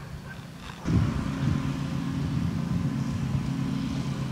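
Skateboard wheels rolling on a concrete sidewalk: a steady low rumble that starts suddenly about a second in and holds at an even level.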